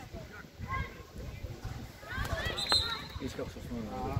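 Voices calling out across an outdoor football pitch during a match. There is one sharp smack a little before three seconds in, the loudest moment.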